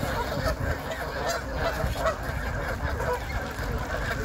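Canada geese honking, many short calls overlapping throughout.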